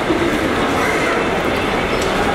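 Steady bustle of a busy crowd with scattered voices, under the rolling rumble of a luggage trolley's wheels on a paved floor.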